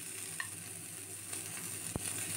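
Green grapes frying in mustard oil in a nonstick pan: a faint, steady sizzle as a steel spoon stirs them, with one sharp click near the end.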